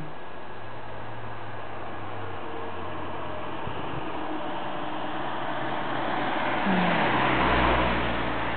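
Steady outdoor hiss that swells over the last couple of seconds, with a low rumble joining it near the end.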